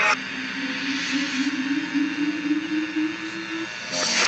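Cartoon soundtrack played in reverse: one held low tone rising slowly in pitch for about three and a half seconds over a steady hiss, then stopping.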